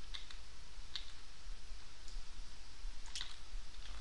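A handful of short, sharp clicks from a computer mouse and keyboard while working the software, over a steady low electrical hum picked up by the microphone.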